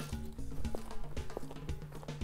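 Background music with a light, steady percussive beat under a stepping melody.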